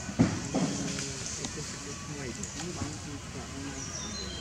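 Indistinct voices talking in the background, too faint to make out words, with one sharp knock just after the start.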